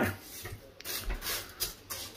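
Dry wholemeal spaghetti being pressed down by hand into a pot of water: faint rubbing and scraping of the stiff strands against each other and the pot's rim, in a few short bursts.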